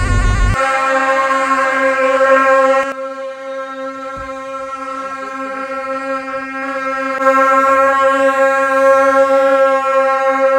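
Tibetan gyaling, the monastic reed horns, sounding one long steady held note. A low rumble stops about half a second in.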